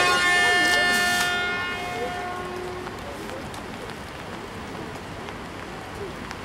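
Horn of the E926 East-i Shinkansen inspection train sounding one steady note that stops about two seconds in.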